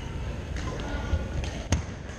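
Badminton rally: one sharp crack of a racket striking the shuttlecock near the end, with a few fainter ticks before it, over the steady low rumble of a large gym hall.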